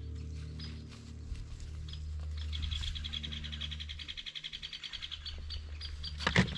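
A small bird's rapid, high-pitched trill, repeated over and over, over a low steady rumble.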